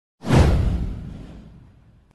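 A whoosh sound effect with a deep boom under it, starting a moment in and falling in pitch as it fades away over about a second and a half.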